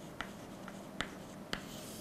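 Chalk writing on a chalkboard: four light, sharp taps of the chalk, about half a second apart, over faint scratching as letters are finished and underlined.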